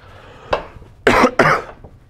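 A man coughing: a brief throat sound, then two loud coughs about a third of a second apart.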